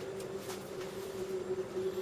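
A steady, faint low hum, with a couple of faint clicks.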